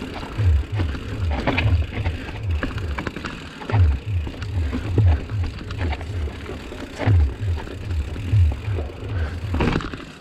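A 29-inch hardtail mountain bike rattling and clicking as it is ridden over a rough stone trail. A low, rhythmic thumping runs underneath, about three beats a second, dropping out twice.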